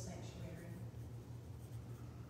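A woman's voice, speaking a prayer, trails off in the first second, leaving a pause filled by a steady low hum.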